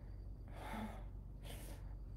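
A woman's audible breaths between sentences: a longer breathy exhale, then a short sharp intake of breath.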